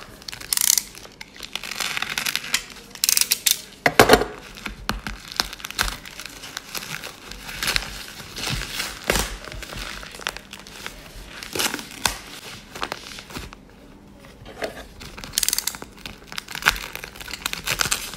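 Black plastic parcel wrapping and tape being torn open and crinkled by hand: irregular rustling and crackling broken by sharper rips, the loudest about three and four seconds in.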